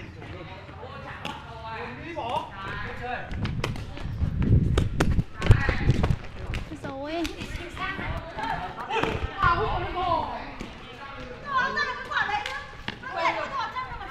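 Shuttlecock (đá cầu) being kicked back and forth in a rally: sharp short taps from shoe hitting shuttlecock, with players' footsteps and thuds on the tiled court, heaviest about four to six seconds in.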